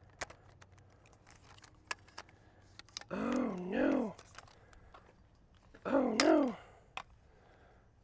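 A man's voice making two wordless sounds, one lasting about a second near the middle and a shorter one about two seconds later, amid scattered small clicks from handling a broken tripod.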